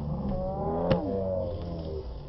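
Voices calling out across an open playing field, with a low steady rumble and a single sharp knock about a second in.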